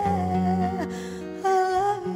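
Music: a slow song passage without words. Held melody notes glide between pitches over a low accompaniment that thins out about halfway through.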